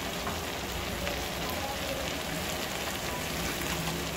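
Onion-tomato masala sizzling in ghee in an aluminium kadhai: a steady, even crackling hiss of the fried-down masala.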